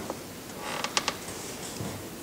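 A short creak followed by a few sharp clicks, about a second in.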